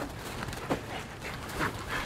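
A Rottweiler lunging at and grabbing a tossed bite sleeve, with short, sharp breathing noises from the dog, one about a third of the way in and a stronger one a little past halfway.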